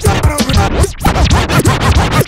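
A DJ scratching a record on a turntable over a loud hip-hop beat: quick back-and-forth scratches that slide up and down in pitch several times.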